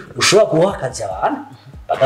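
A man talking, in Kirundi, with short pauses between phrases.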